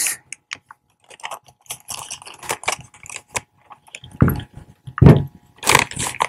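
Wrapping paper rustling and crinkling in short bursts as it is folded and creased over the end of a gift box, with a couple of dull knocks on the table about four and five seconds in.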